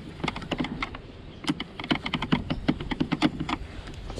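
Rapid, irregular small clicks and rattles of a screwdriver working a screw loose down a deep hole in the plastic motor housing of a Henry vacuum cleaner, metal knocking against hard plastic.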